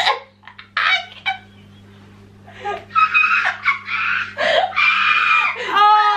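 Uncontrollable, high-pitched shrieking laughter from young women: a few short bursts at first, then after a brief lull, long, wailing laughs from about halfway through.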